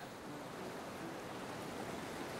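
Sea surf washing over shoreline rocks: a steady hiss of breaking foam and water.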